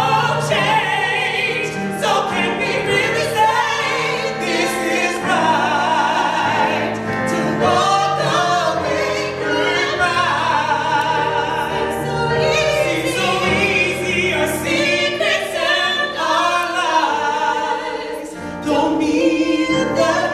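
A woman and a man singing a soul number live, in long held notes with vibrato.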